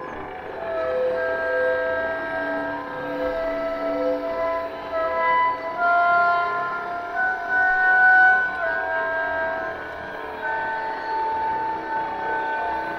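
Contemporary music for oboe and electronics: several long held tones at different pitches overlap and shift slowly, with new notes entering as others fade.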